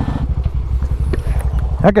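Motorcycle engine idling with a fast, even pulsing.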